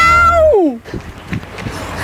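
A person's long, high-pitched yell of "Nããão!", rising and then dropping steeply in pitch until it cuts off under a second in. After it comes a quieter outdoor background with a few light knocks.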